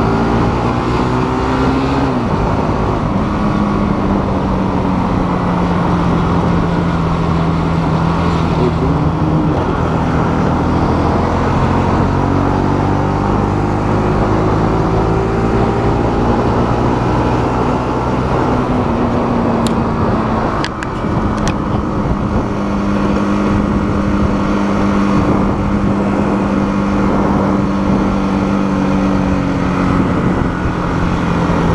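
Motorcycle engine heard from the rider's seat while riding in traffic. Its note slides down and up with throttle and gear changes, dips briefly about two-thirds of the way through, then holds steadier, over a constant rush of wind and road noise.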